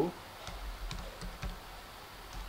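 Computer keyboard typing: a handful of light, separate key presses spread through two seconds.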